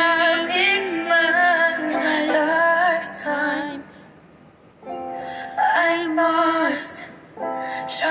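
A young woman singing a ukulele pop song along with its accompaniment, her voice wavering with vibrato on held notes. About four seconds in the singing drops away briefly, and held chords carry on before she comes back in.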